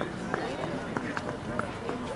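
Indistinct voices of several people talking on and around the field, with a few short sharp clicks.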